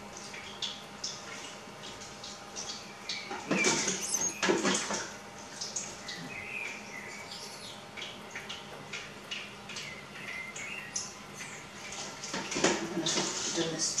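Wet squishing, splatting and dripping as soft, soaked chili peppers are squeezed and handled over a metal pot and colander, with two louder bouts of handling, about four seconds in and near the end.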